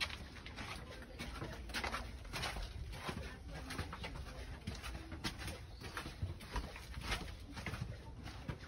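Footsteps on a stone path, a soft knock every half second to second, with a bird calling now and then in the background.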